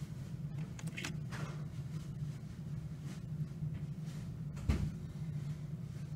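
Handling noise at a laser printer's plastic underside: a few faint clicks and a single short thump about five seconds in, over a steady low hum.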